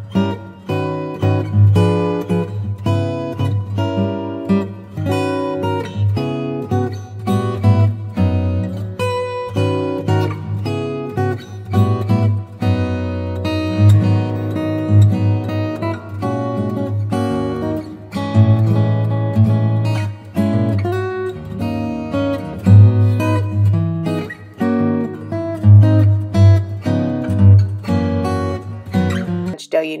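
Background music: acoustic guitar plucked and strummed over a steady bass line.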